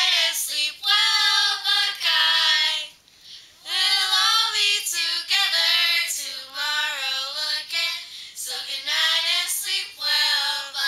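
Young girls singing a camp song together without accompaniment, in long held phrases, with a short breath pause about three seconds in.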